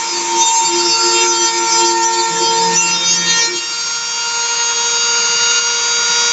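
Dremel rotary tool spinning at a steady high whine as its bit engraves a gear outline into fibreboard on a small CNC machine, with the machine's stepper motors humming at pitches that start, stop and shift as the axes move, mostly in the first half.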